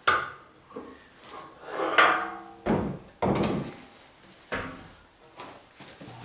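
A long steel rail knocking and clanking several times as it is handled and shifted during straightening, with one knock about two seconds in ringing briefly with a metallic tone.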